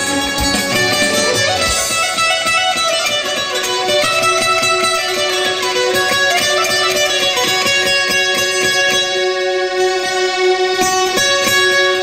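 Azerbaijani ashiq saz, a long-necked plucked lute, played in fast picked notes, with a Korg synthesizer keyboard accompanying under it in a long held tone.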